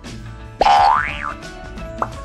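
A cartoon 'boing' sound effect, one sliding tone that rises and then drops back over about three quarters of a second, starting about half a second in, over steady background music.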